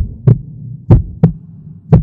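Heartbeat sound effect over a low steady hum: three paired thumps, lub-dub, about one beat a second, an edited suspense cue.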